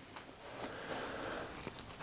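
Quiet pause: faint, even room noise with no distinct sound event.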